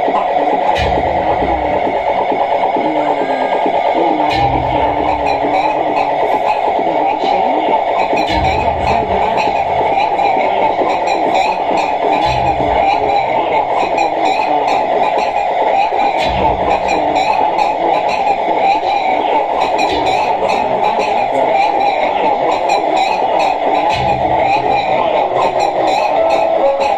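Live experimental noise music from tabletop electronics: a dense, steady wash of noise with a low pulse returning about every four seconds, and a scatter of fine high clicks from about a third of the way in.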